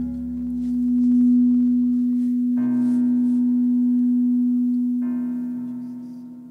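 Background keyboard music of long sustained chords over a steady low note, changing chord about two and a half seconds in and again about five seconds in, then fading.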